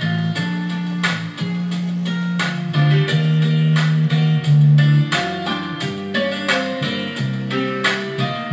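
Instrumental passage of a slow ballad with no singing. An electric bass guitar is played along with the band, holding long low notes that change about every second, under regularly struck chords.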